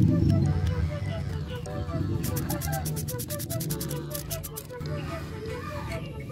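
Ratchet wrench clicking in two quick runs, turning an allen socket to loosen the brake-pad retaining pin on a motorcycle's front disc brake caliper.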